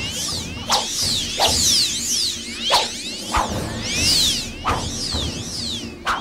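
Martial-arts fight sound effects: rapid whooshing sweeps rising and falling in pitch, with a sharp hit roughly once a second, over sustained background music.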